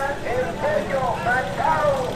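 Voices in a busy market: a vendor calling out in Spanish and people talking, over a low steady rumble.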